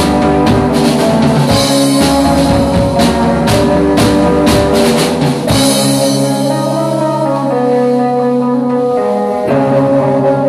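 Live indie rock band playing: two electric guitars over a drum kit. The drums stop about halfway through, leaving sustained, ringing electric guitar chords, with a new chord struck near the end.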